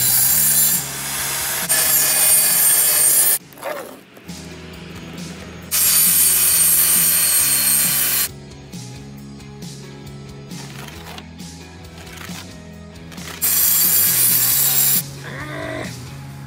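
Portable table saw cutting OSB sheets: several separate cuts of one to two seconds each, over background rock music that carries on between the cuts.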